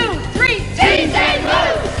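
A group of wheelchair basketball players shouting a team cheer together as they break a huddle, with background music underneath.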